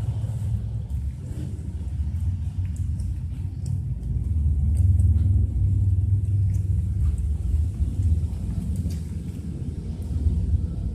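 A low, uneven rumble that swells about four seconds in and eases off near the end, with faint scattered clicks above it.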